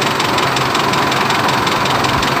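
Diesel engine of a 3-ton Toyota automatic forklift idling steadily. It is freshly serviced with new oil, a new oil filter and a new diesel fuel filter.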